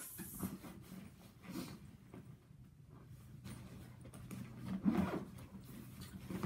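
Soft rustling and rubbing of a fabric duffel bag and its side pocket being handled, with a few light knocks, over a faint steady low hum.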